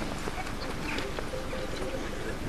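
A few light footsteps on paving over a steady outdoor rumble of wind and recording noise, with faint distant voices.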